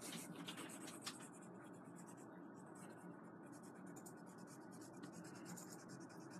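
Faint scratching of a graphite drawing pencil on paper in quick, repeated shading strokes, easing off for about two seconds in the middle before picking up again.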